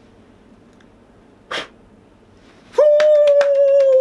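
A short puff of breath blowing out birthday candles, then rapid hand claps under a long, high held note that slowly falls in pitch.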